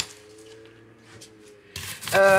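A sharp click, then a faint low hum, then close rubbing and rustling of the camera or device being handled near the microphone near the end.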